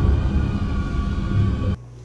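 Loud, uneven low rumble with faint steady music underneath, cutting off abruptly near the end.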